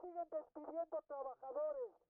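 A man speaking through a megaphone, his voice loud, tinny and narrow in tone, in quick phrases.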